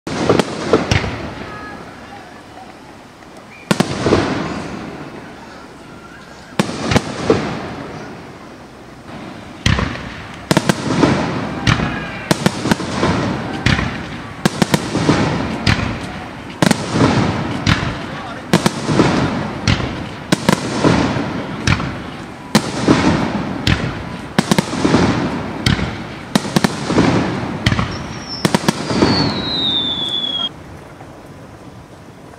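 Aerial firework shells bursting overhead in a long series, each boom echoing. The booms come a few seconds apart at first, then about one a second. Near the end a whistle falls in pitch.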